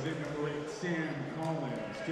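Indistinct voices of spectators and players chattering in a gymnasium during a break between volleyball points.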